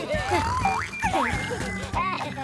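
Cartoon soundtrack: background music under the characters' wordless vocal exclamations, with a quick rising pitch glide a little under a second in.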